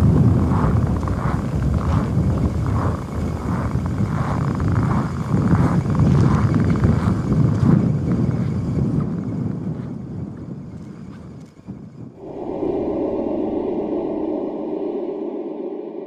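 Strong wind buffeting the microphone in an open, snowy place: a loud, steady rumble. About twelve seconds in it gives way to a steady held musical drone that fades toward the end.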